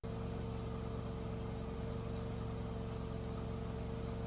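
Steady, unchanging hum of a mower-mounted tank sprayer rig running while its hose wand sprays, with one constant tone over a low drone.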